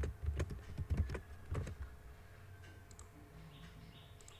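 Computer keyboard typing: a quick run of keystrokes in the first couple of seconds, then only a faint steady hum.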